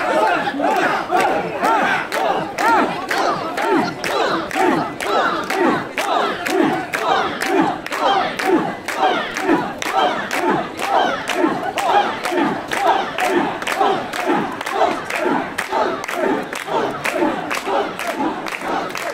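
Crowd of mikoshi bearers chanting in unison as they shoulder a portable shrine, with about two shouts a second in a steady rhythm. A sharp clack lands on each beat.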